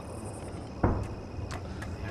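Crickets chirping in a fast high trill over a steady low hum, the chirping fading out partway through. A short dull sound comes a little under a second in.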